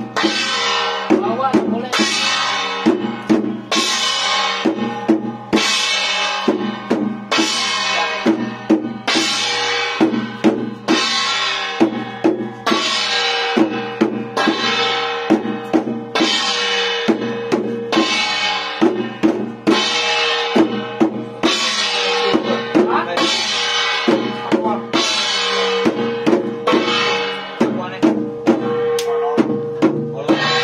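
Chinese temple ritual percussion: a drum and ringing metal percussion beaten in a steady beat, about one stroke a second, each stroke leaving a ringing shimmer.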